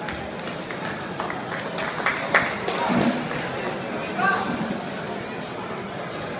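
Background crowd chatter in a large hall, many voices talking at once, with a few sharp knocks; the loudest knock comes about two and a half seconds in.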